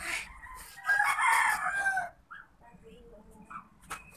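A rooster crowing once, about a second in, a single call of just over a second.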